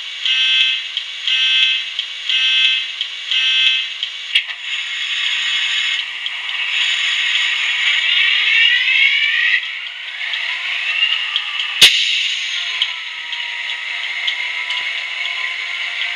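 Recorded British Rail Class 67 diesel engine start (EMD two-stroke V12) played by a model locomotive's DCC sound decoder through a small speaker. A tone pulses about once a second for the first four seconds, then the engine sound runs continuously with rising sweeps in pitch. A sharp click comes about twelve seconds in, and the engine then settles to a steadier run.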